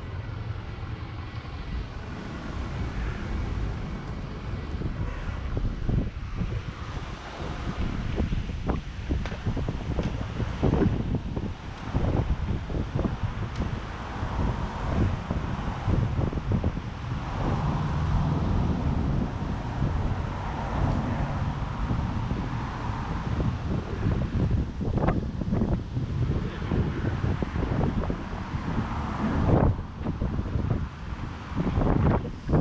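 Street ambience of road traffic passing, with wind buffeting the microphone in a steady low rumble.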